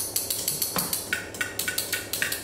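Wire whisk clicking against a stainless steel mixing bowl as flour is folded into batter, a steady run of about six sharp metal clicks a second.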